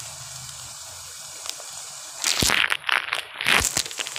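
Vegetable curry sizzling quietly in ghee in a pan, then about two seconds in a burst of loud, irregular crackling.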